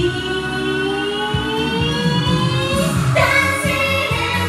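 A woman singing an anime pop song along to a karaoke backing track, with one long note that slowly rises in pitch for about three seconds before the next line begins.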